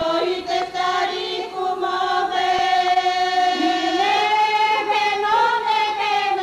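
Group of women singing a Bulgarian folk song together in long held notes, in two voice parts; the lower part slides up about three and a half seconds in.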